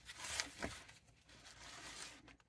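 Pages of a spiral-bound paper notebook being flipped, two soft rustles with a light click between them.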